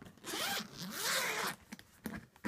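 Zipper on a fabric suitcase being run along the case in one long pull of over a second, its rasp wavering in pitch, followed by a few small clicks.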